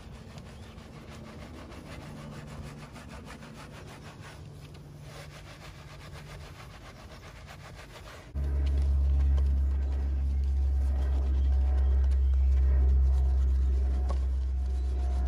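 A wash mitt scrubbing a soapy alloy wheel, with quick wet rubbing strokes. About eight seconds in, a loud, steady low rumble starts abruptly and carries on under the scrubbing.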